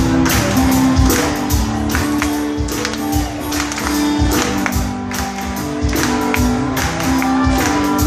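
Live Celtic rock band playing an instrumental passage: fiddle over guitars and a steady drum beat.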